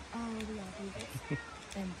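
Soft, drawn-out voice sounds falling in pitch: a longer one early on and a short one near the end.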